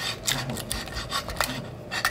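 Wheel pizza cutter rolling through a crisp tortilla pizza in a frying pan, a string of short crunching, scraping strokes with a few sharp clicks.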